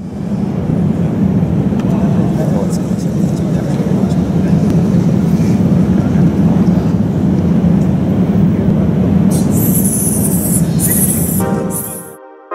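A loud, steady, low rumbling din of room noise with indistinct voices, with a few sharp crackles near the end.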